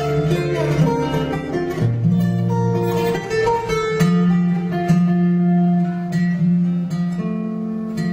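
Acoustic guitar played fingerstyle: a melody of plucked notes over long, ringing bass notes, with new bass notes struck about two seconds in, again about four seconds in, and once more near the end.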